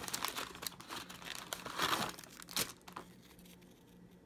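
Plastic wrapper and tray of an Oreo cookie package crinkling as a hand digs cookies out, in uneven bursts that are loudest about two seconds in and die down near the end.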